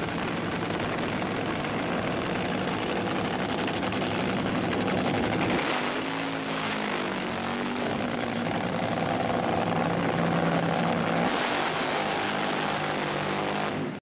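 Race car engines running at a drag strip: a steady mechanical noise with engine tones that waver and glide in pitch partway through.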